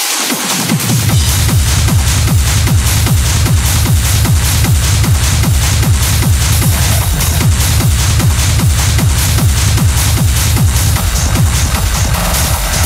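Hard techno from a continuous DJ mix: a driving kick drum on every beat with dense percussion over a heavy bass line. The low end sweeps back in during the first second after a brief bass cut.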